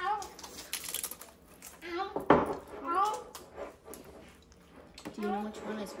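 A child's voice making short, gliding sing-song sounds in snatches. About a second in there is a crackly crunch of a salsa-laden tortilla chip being bitten. A sudden loud burst a little after two seconds is the loudest sound.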